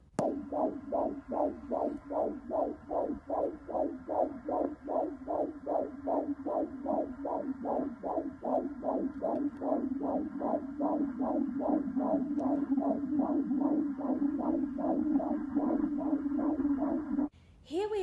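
Fetal heartbeat sound from a toy ultrasound scanner: a fast, even whooshing pulse, a little over two beats a second, over a steady hum. It cuts off suddenly near the end.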